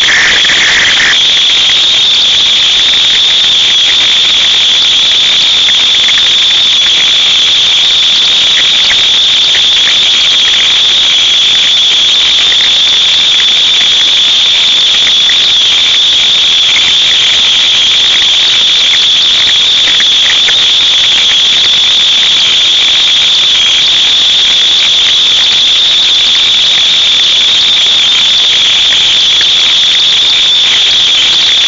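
A loud, steady high-pitched hiss that runs without a break.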